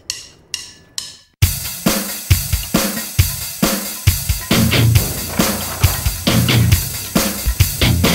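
Rock music: three sharp hits less than half a second apart, then a full drum kit with heavy bass comes in about a second and a half in, playing a steady beat.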